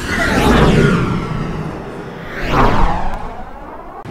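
Two whooshing pass-by sound effects about two seconds apart, each swelling up and falling away.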